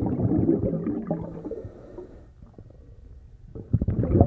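Low, rumbling noise with no clear pitch, fading down about two seconds in and surging back just before the end with a few clicks.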